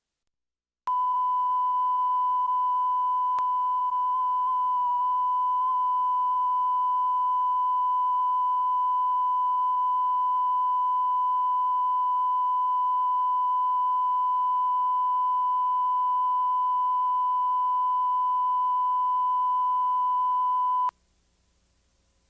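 Steady test tone, the line-up tone recorded with color bars at the head of a videotape: one unbroken pitch that starts about a second in and cuts off suddenly about a second before the end, wavering slightly in pitch a few seconds in.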